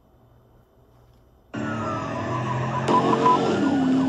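Near silence, then about a second and a half in a police cruiser's siren cuts in abruptly, wailing in slow rising and falling sweeps, with the patrol car's engine and road noise underneath as it speeds up in pursuit.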